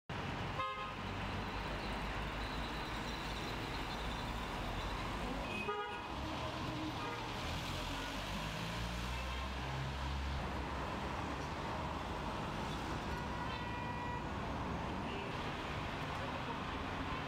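Street traffic ambience: cars running and passing, with a few short car horn toots now and then.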